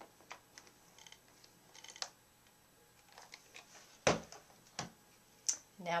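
A few light clicks and taps from hands handling the pressed fabric block at a pressing board, over a quiet room, with the loudest, a dull thump, about four seconds in.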